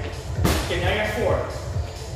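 A single hard hit landing on a freestanding punching bag about half a second in, over background dance music with a steady beat.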